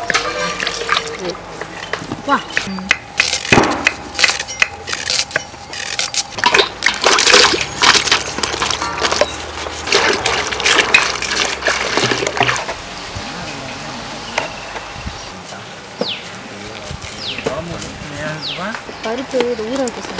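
Water splashing and sloshing as hands swish vegetables around in a metal basin of water. The splashes come irregularly and thickly at first, then thin out after about thirteen seconds.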